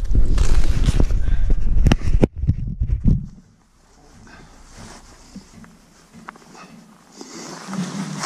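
Camera handling noise: a heavy rumble and several knocks for about three seconds as the camera is moved and set down in the snow. This gives way to a low, quiet stretch, with a faint rustle of snow near the end as a shot ptarmigan is picked up.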